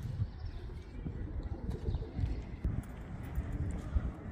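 Footsteps on cobblestone paving, irregular and uneven, over a low rumble.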